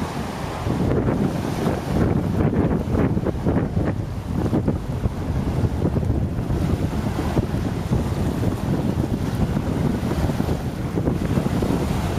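Gusty wind buffeting the camera microphone, over small waves washing onto the shore.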